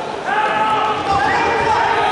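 Several voices shouting and calling out across an echoing gym, with dull thuds of the wrestlers moving on the mat.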